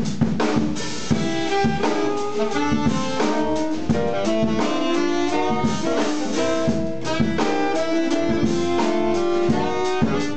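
Live jazz combo: alto and tenor saxophones playing the melody together over double bass and a busy drum kit.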